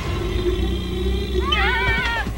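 A wavering, howl-like animal cry rises and then falls in the last half second, over a low, sustained music drone.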